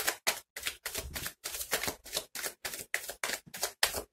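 A deck of tarot cards being shuffled by hand: a fast, uneven run of papery slaps and flicks, about four to five a second.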